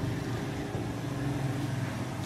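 A steady low hum with a faint even hiss over it, the background noise of the room while no one is speaking.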